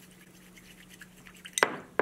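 Chopsticks stirring potato-starch slurry in a small ceramic bowl: faint light scraping and ticking, then two sharp clinks near the end.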